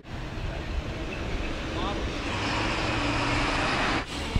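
Road traffic noise: a passing vehicle whose rushing sound grows louder toward the end, with faint voices in the background.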